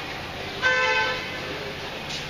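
A single short, steady, horn-like tone with clear overtones, lasting about half a second from just over half a second in. It is the loudest thing here, over a steady low background noise.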